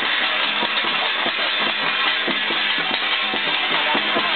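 Chinese temple percussion: drums and clashing hand cymbals beaten in a steady, even rhythm, over a continuous bright metallic wash.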